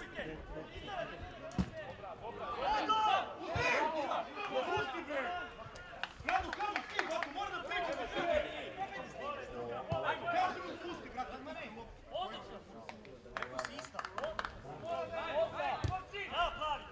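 Voices of players and onlookers at a football match, calling and talking over one another, with a few short sharp knocks among them.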